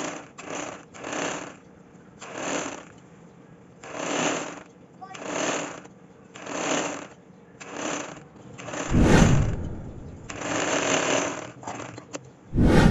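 Nissan sewing machine stitching slowly, its mechanism making a noisy pulse a little more than once a second. About nine seconds in there is a louder, deeper rushing sound.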